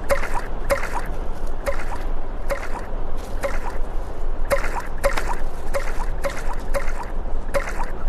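Stones skipping across a lake: a series of short sharp water strikes at irregular spacing, roughly two a second, each with a brief rising pitch, over a steady outdoor noise of wind and water.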